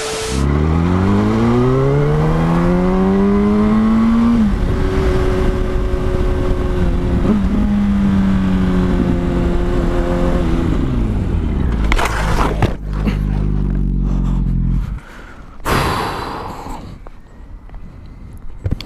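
2006 Yamaha R1 sport bike's inline-four engine pulling hard, its revs rising for about four seconds and then holding, with wind rush on a helmet-mounted microphone. About ten seconds in the revs fall as the throttle closes, and near twelve seconds a sudden harsh noise burst marks hard braking and the bike hitting a car that turned across its path. The engine runs low and cuts out about fifteen seconds in, followed by a short scraping burst.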